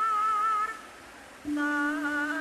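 Javanese gamelan music with sung vocal line: a high voice holds a long wavering note that ends under a second in. After a short lull, a steady lower tone rings out from a strike about one and a half seconds in, and a wavering voice joins it.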